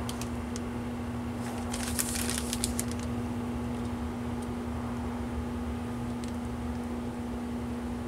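A plastic anti-static bag crinkling as it is handled, a quick cluster of crackles about two seconds in and a few single ticks, over a steady background hum.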